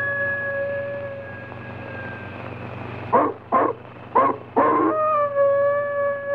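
A held, eerie music note fades away. A dog then barks four times in quick succession, and the note comes back.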